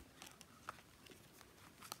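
Near silence with faint handling noise: a pen and a notebook's cover and pages being handled, with a couple of light clicks.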